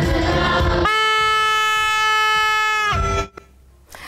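Protest crowd noise, then one steady, loud horn blast held for about two seconds, most likely a handheld air horn in the crowd. The blast starts and stops abruptly.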